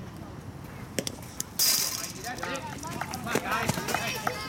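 A baseball striking the chain-link backstop: a sharp knock about a second in, then a loud, brief metallic rattle of the fence, followed by spectators' voices.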